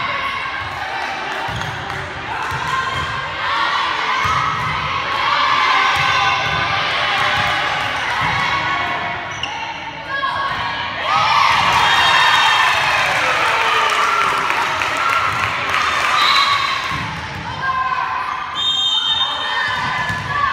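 Players and spectators shouting and cheering in a gymnasium during a volleyball rally, with repeated thuds of the ball and feet on the court. The shouting is loudest about eleven seconds in.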